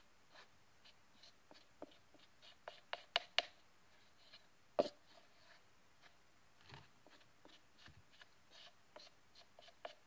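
Metal spoon scraping and tapping inside a plastic tub of cornstarch while scooping the powder into a small bowl: faint, scattered scrapes and clicks, with a sharper cluster of taps about three seconds in and another about five seconds in.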